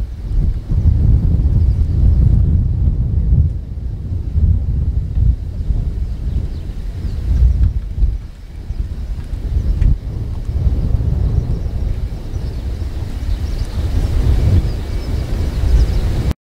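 Low rumble of a Lockheed C-130 Hercules's four turboprop engines as it flies past and away, with wind buffeting the microphone.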